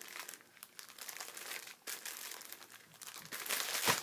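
Packs of paper napkins in their packaging crinkling as they are handled and shuffled, in irregular crackles that grow louder near the end.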